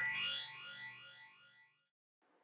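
Electronic intro effect of the stage's backing track: a phased sweep rising in pitch that fades away by about a second and a half in.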